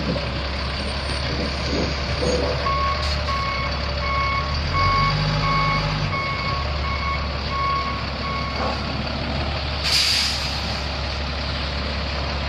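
Caterpillar 3126 inline-six diesel of a Sterling Acterra truck running while its backup alarm beeps steadily, about three beeps every two seconds, for around six seconds. About ten seconds in, a short burst of air hiss from the air brakes.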